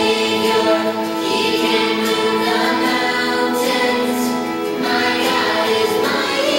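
Christian song with a choir of voices singing over instrumental backing; the low bass drops out right at the start.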